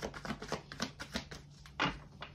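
Tarot cards being shuffled by hand: a quick run of light clicks and slaps, thinning out about a second and a half in, then one louder snap near the end.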